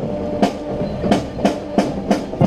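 Marching band's drums beating a steady cadence of sharp strokes, about three a second, while the brass rests between phrases.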